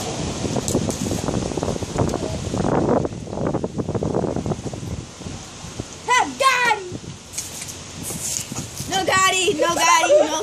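Children's voices laughing and calling out, in short bursts about six seconds in and again near the end, with a rough rustling noise over the first half.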